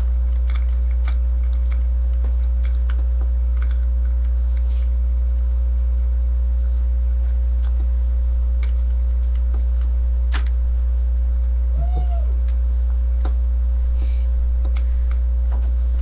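A steady low electrical hum is the loudest sound, with faint scattered clicks of a small screw being tightened into an RC truck's motor mount. About twelve seconds in, a brief distant voice calls out once, rising and falling in pitch.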